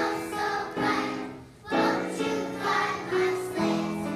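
A kindergarten class singing together in chorus, with a brief pause for breath about one and a half seconds in.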